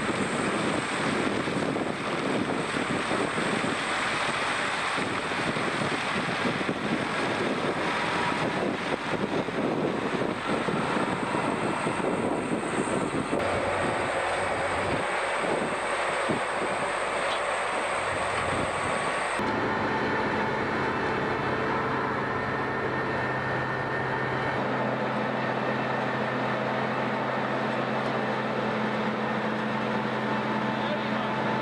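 Self-propelled sugar beet harvester at work, heard as a steady diesel engine drone mixed with the running of its lifting and cleaning gear. The sound changes at two picture cuts, about a third and two thirds of the way in. After the second cut it settles into a steadier engine hum.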